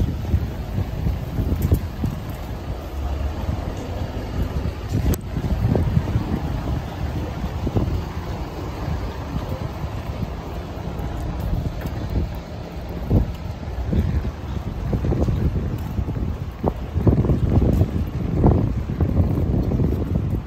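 City street ambience: car traffic on a wet road, with wind buffeting the microphone in low, uneven gusts that grow heavier near the end.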